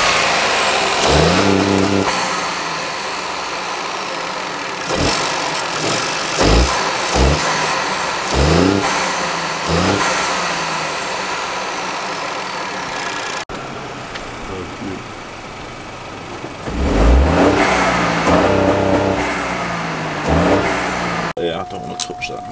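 Ford 1.0-litre EcoBoost three-cylinder turbo engine breathing through an open cone-filter induction kit, idling and being blipped in a series of quick revs that rise and fall, with a longer rev near the end.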